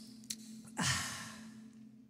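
A man's long breathy exhale, a sigh into a close microphone, starting about a second in and fading out. A low steady hum runs underneath.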